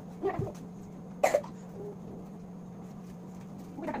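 Two short vocal outbursts from a child, a brief one right at the start and a sharper, louder one just over a second in, over a steady low hum.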